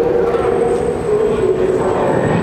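Train passing on the elevated rail line overhead: a loud, steady running noise with a held whine, and a thin high whine that comes in about half a second in and fades near the end.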